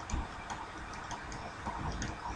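Faint, irregular clicks and taps of a pen stylus on a graphics tablet while a chemical formula is handwritten.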